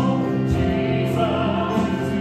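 Music with a choir singing sustained chords that change pitch about half a second in.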